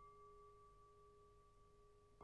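Near silence, holding only a faint, steady ringing tone on two pitches that sustains without fading.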